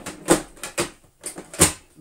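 Hard plastic parts of a Hoover Sonix canister vacuum clicking and knocking as they are handled and fitted back into place. There are four or five sharp clicks, the loudest about one and a half seconds in.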